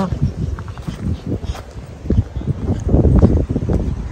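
Wind buffeting a phone microphone in a low, uneven rumble that swells in gusts, strongest near the end. A few light knocks sound through it.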